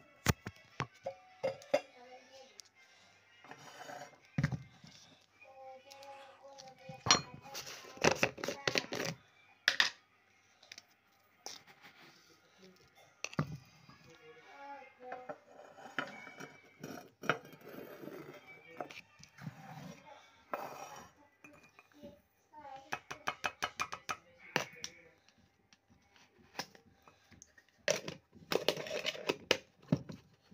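Teaspoon clinking and scraping against a glass cup and a plastic sugar jar as sugar is spooned into water, in scattered clinks with quick runs of clinks late on.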